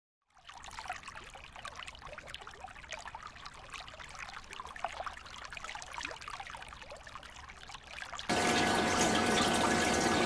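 Water trickling, faint and crackling with many tiny splashes. A little after eight seconds, a louder steady rush of water with a faint hum cuts in abruptly.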